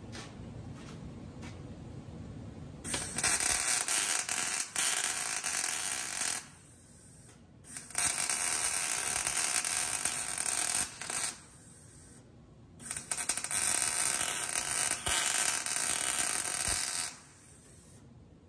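MIG welding arc laying three short welds, each a few seconds of dense, steady crackling. The first starts about three seconds in and the last stops about a second before the end, with short quiet pauses between.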